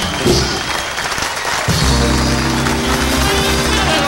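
Live doo-wop vocal group and backing band ending a song: busy playing, then a final chord held from about two seconds in, with the audience applauding.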